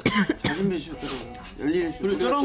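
Young men speaking Korean, opening with a short, loud cough-like burst of throat clearing.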